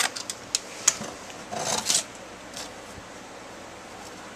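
Handling noise of a tape measure being moved against a cardboard box: a few sharp clicks in the first second, then a brief scrape and rustle about halfway through, over a steady background hiss.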